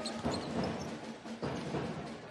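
Basketball arena ambience during play: a low wash of crowd noise with faint music from the hall's sound system underneath.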